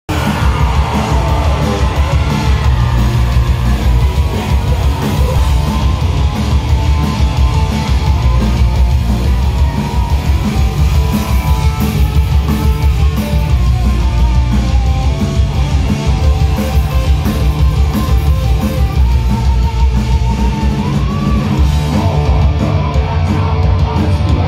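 Loud live rock band: distorted electric guitars, bass and drums playing a steady driving beat, with shouted vocals, heard from within the crowd with heavy, boomy low end.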